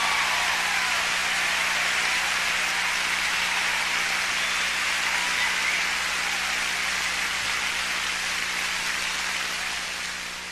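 Concert audience applauding in a dense, even wash of clapping right after a song ends, slowly dying down near the end.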